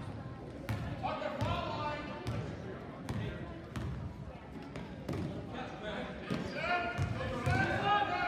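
A basketball being dribbled on a gym's hardwood floor, a string of sharp bounces, with voices calling out on the court.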